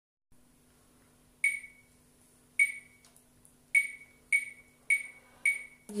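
Metronome count-in: two clicks a little over a second apart, then four at twice that speed, each a short bright tick with a brief ring. An alto saxophone note starts right at the end.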